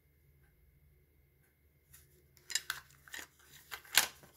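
Plastic cassette cases being handled, with a run of clicks and clatters starting about halfway in and loudest near the end, after a near-silent first half.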